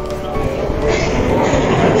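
Steady background noise with a faint hum, no clear voice.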